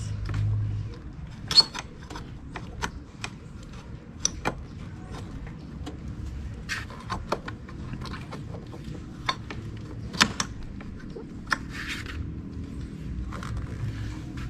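Small metallic clicks and clinks, scattered irregularly, as a motorcycle brake caliper loaded with new brake pads is worked onto the front brake disc of an Italika WS150 scooter.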